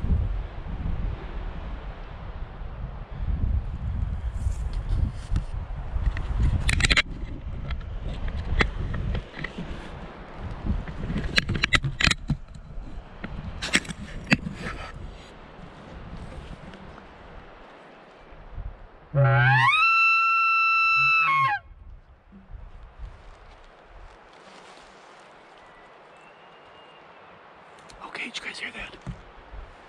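Elk bugle call blown once for about two seconds: a low start climbing to a high, steady whistle that drops off into a low grunt. Before it come wind on the microphone and rustling and knocks from handling the camera.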